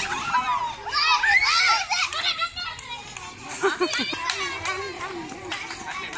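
A group of children's high-pitched, overlapping shouts and excited voices as they run around a ring of chairs in a game of musical chairs.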